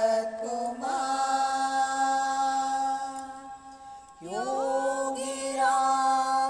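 A voice chanting a devotional mantra in long held notes, breaking off shortly before four seconds in and coming back with a new phrase that slides up in pitch.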